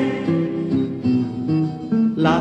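Acoustic guitar playing a short instrumental passage of a folk-song accompaniment, a few notes changing in quick succession, with no singing over it.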